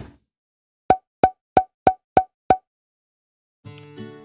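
A single thump at the start, then six short, evenly spaced pitched pops about a third of a second apart, a percussive sound effect like wood block hits. Strummed guitar music comes in near the end.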